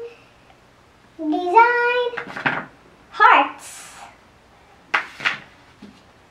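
A young girl's voice in short, half-spoken phrases, too unclear to make out, with a brief sharp handling noise about five seconds in.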